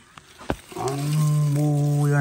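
A short click about half a second in, then a man's voice holding one long drawn-out exclamation, "yaar", at a steady pitch for well over a second.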